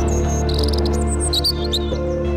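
Television title jingle: music with sustained chords, with birdsong chirps and twitters laid over it throughout.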